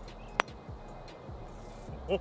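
A single sharp click of a putter striking a ping pong ball, about half a second in, over faint background music.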